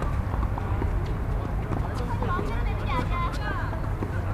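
Outdoor tennis court ambience: a steady low rumble with indistinct voices, and a few faint knocks that fit tennis balls being hit during a doubles rally.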